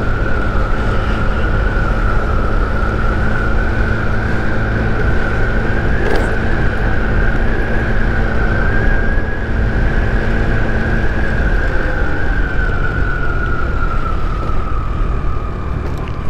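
Boom PYT Revolution 50cc scooter running at a steady cruising speed, with a high steady whine from the scooter that rises a little midway and drops toward the end as it slows, over a low rumble of wind and road noise.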